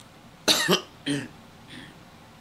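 A woman coughing, clearing her throat: two sharp coughs in quick succession about half a second and a second in, then a faint softer one near the end.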